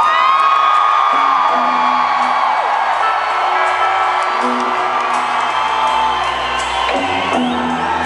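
A long, high scream that glides up and then holds one pitch for about two and a half seconds, over low sustained notes from the band and arena crowd noise; a shorter rising yell comes near the end.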